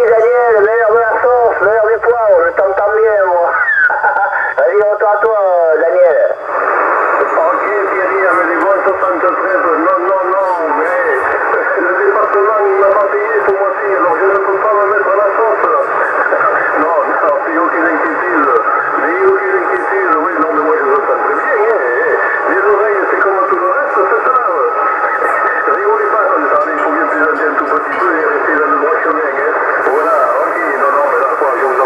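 Voices of other CB operators received on upper sideband through a Yaesu FT-450 transceiver's loudspeaker. The speech comes through thin and narrow, as single-sideband radio does. About six seconds in, the signal changes to a denser, busier transmission that sounds like overlapping or stronger stations.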